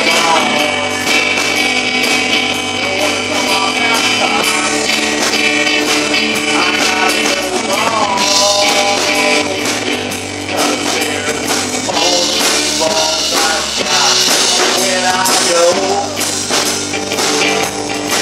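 A live rock band playing a song: strummed acoustic guitar, bass guitar and drum kit, with a man singing over them.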